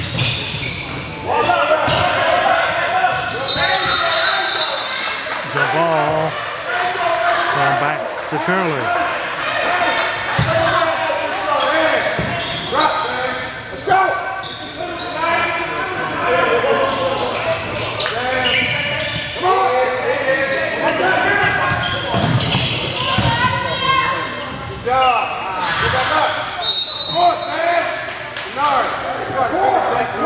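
Basketball game in a large gym: a ball being dribbled on the hardwood court and players' voices echoing in the hall, with a short, steady, high referee's whistle blast a few seconds in and again near the end.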